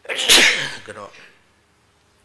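A man sneezing once into a tissue held close to the microphone: one sudden loud burst that fades out over about a second.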